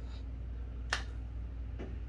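Handling noise from a carbon fishing rod turned in the hand: one sharp click about a second in and a fainter one near the end, over a steady low hum.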